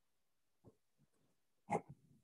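Near-quiet room tone broken by a short double bump of handling noise about three-quarters of the way in, as hands work the equipment at the desk.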